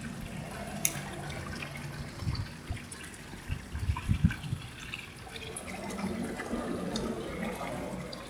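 Pond water sounds: light splashing and dripping with scattered small plops, and a few soft low thumps from about two to four and a half seconds in.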